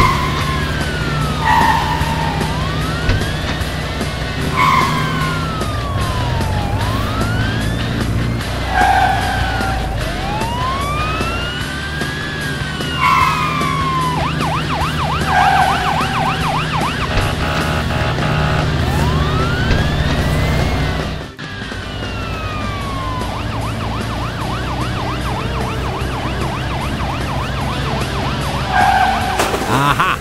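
Police siren wailing up and down in slow cycles, switching in places to a fast warbling yelp, over a steady low engine hum with short bright tones between the wails.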